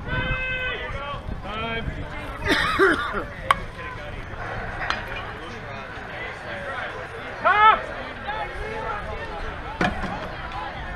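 Shouted calls from ballplayers across an outdoor softball field, loudest about seven and a half seconds in, with a few sharp single knocks between them.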